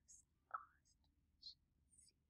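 Near silence: room tone with a few short, faint whispered sounds from a woman.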